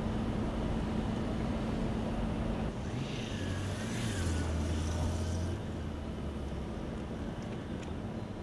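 Street traffic noise with a steady low hum, and a motor vehicle passing about three to five and a half seconds in.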